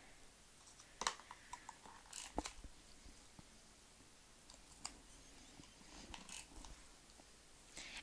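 Faint handling of paper strips on a scrapbook page and a handful of soft, scattered clicks from a handheld tape-runner adhesive dispenser tacking the strips down.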